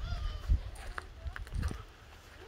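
Wind buffeting the phone's microphone in gusts, with a short high call at the very start and a few light clicks.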